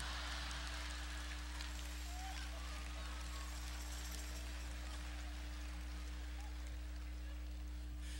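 Faint, steady audience applause and crowd noise from a large congregation, over a low steady hum.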